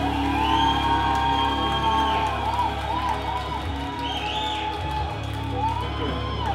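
Live rock band holding a final sustained chord, guitar and bass ringing out steadily, while the audience whoops and cheers over it.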